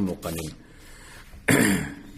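A man clears his throat once, in a short rough burst about one and a half seconds in.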